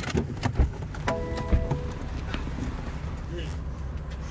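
Stage 2 BMW F80 M3's twin-turbo straight-six idling with a steady low rumble, heard from inside the cabin, while the car sits stopped. Clicks and knocks of doors and seats are mixed in, with a brief tone about a second in.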